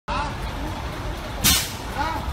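Truck idling with a steady low rumble under a man's voice, and a brief loud hiss about one and a half seconds in.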